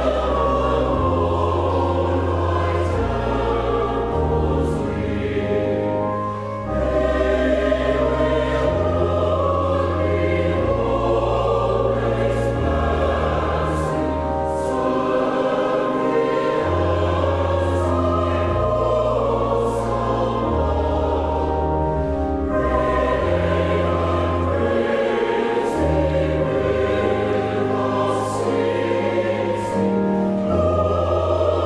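Mixed church choir singing in parts, with pipe organ accompaniment whose sustained bass notes step from chord to chord every second or two.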